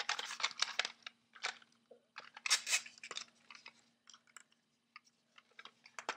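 Hard plastic toy parts clicking and clattering as a small figure is handled and fitted into a toy flying saucer. The clicks come in irregular bursts, densest in the first second and again about two and a half seconds in, then thin out to a few light ticks.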